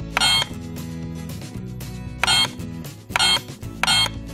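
Mickey Mouse Clubhouse toy fire truck's bell dinging four times, with short, bright rings, over background music.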